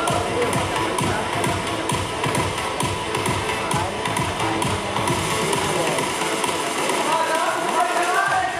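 Loud music with a steady beat and a voice over it, thinning out in the low end near the end.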